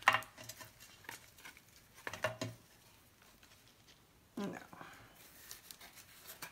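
Clicks and light clattering taps of craft supplies, ribbon spools and a rhinestone trim strip, being picked up and set down on a table, in the first two and a half seconds, with faint rustling near the end.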